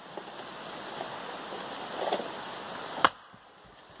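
A single sharp crack of an axe striking and splitting a firewood round, about three seconds in, over a steady background hiss that falls quieter just after the strike.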